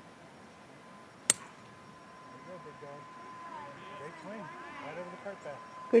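A golf club striking a ball off the tee in a full swing: one sharp click about a second in.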